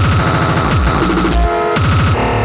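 Loud breakcore played live: rapid chopped breakbeats over heavy bass. About a second and a half in, the beat briefly cuts out, leaving a short held pitched chord.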